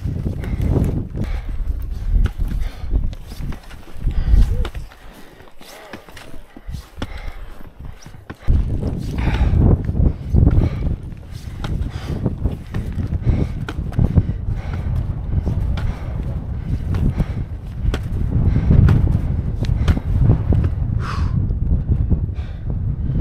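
Skis on climbing skins sliding and stepping uphill on snow, stride after stride, with a low rumble of wind on the microphone. The noise drops to a quieter stretch about five seconds in and comes back suddenly after eight seconds.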